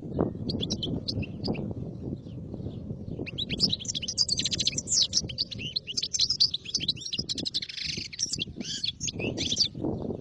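Caged European goldfinch singing: fast, high twittering phrases, broken at first and then running almost without a break from about three and a half seconds in, with a harsher buzzy stretch near the end. A steady low rumble runs underneath.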